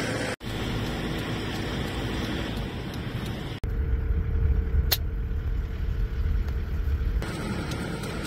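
Car cabin noise while driving on a mountain road: a steady engine and tyre rumble that drops out abruptly twice, with a stronger low rumble through the middle and a single sharp click about five seconds in.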